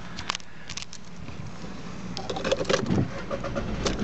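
Key clicks at the ignition, then a VW Polo 1.2 TDI's three-cylinder diesel engine cranking and starting about two seconds in, rising in level, heard from inside the cabin. It starts nicely.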